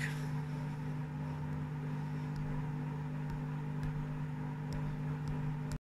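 Steady low machine hum in the room, with a few faint ticks, cutting off suddenly just before the end.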